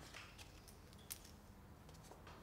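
Near silence with faint light clicks and taps as a plastic graduated cylinder is handled and tipped to pour dilute hydrochloric acid into a plastic cup. One sharper click comes about a second in.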